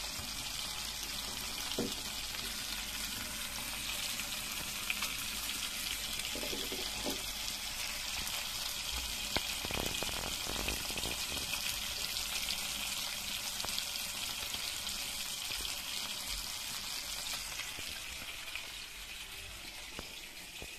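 Turmeric-coated fish steaks sizzling steadily in hot oil in a black pan, with a few louder crackles about halfway through. The sizzle eases off slightly near the end.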